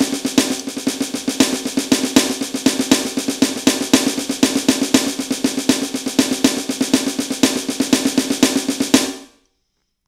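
Snare sound of an electronic drum kit played with sticks: a fast, continuous sticking exercise of single, double and triple strokes that runs together into a drumline-style cadence. It stops about a second before the end.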